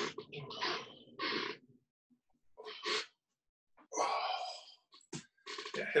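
A man's breathing during a hip-rotation warm-up: a series of about five short, noisy exhales with quiet gaps between them, and a brief click about five seconds in.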